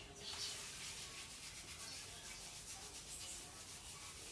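Faint, steady rubbing of hands through short, wet hair.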